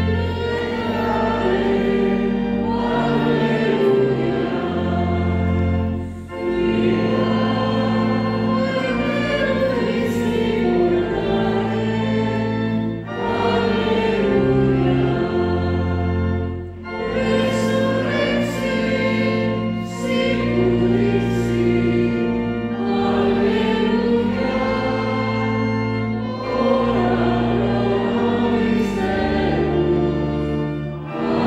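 A choir singing a sacred hymn in phrases, with long held low notes sounding underneath the voices.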